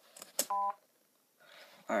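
BrailleNote Apex notetaker sounding one short, buzzy electronic beep about half a second in, after a couple of key clicks: its alert tone refusing the key press just made. A voice starts at the very end.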